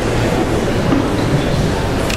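String chamber orchestra playing a steady, dense passage, its weight in the low register.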